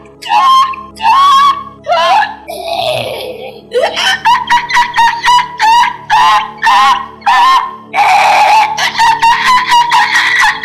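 A woman screaming and wailing close into a handheld microphone in repeated cries, drawn out at first, then short and quick from about four seconds in, over sustained background keyboard music.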